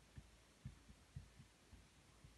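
Near silence broken by about six faint, soft, low thuds at irregular intervals: a felt-tip marker knocking and pressing on a whiteboard during writing.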